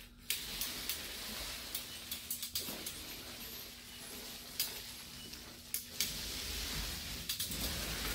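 Paint roller on an extension pole rolling wet paint onto a wall: a steady sticky hiss, broken by brief pauses where the stroke turns, with a few faint clicks.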